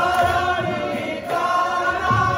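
Group of men singing a devotional bhajan together, holding long sustained notes. The phrase breaks off about a second and a quarter in, and the next held phrase follows.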